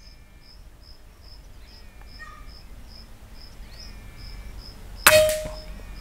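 A single PCP air-rifle shot about five seconds in: a sharp crack followed by a short metallic ring. An insect chirps rhythmically, about twice a second, throughout.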